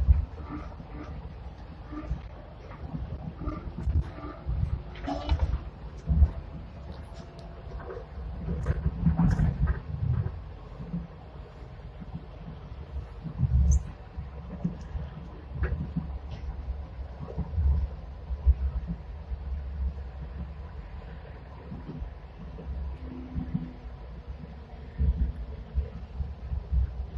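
Hong Kong Light Rail car running along the track, heard from inside the rear cab: a continuous low rumble broken by irregular thumps and rattles, with a faint steady hum and a few small clicks.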